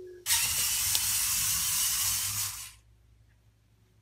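VEX robot's electric drive motors and gears whirring as it drives forward for about two and a half seconds, then cutting off suddenly as the program halts it.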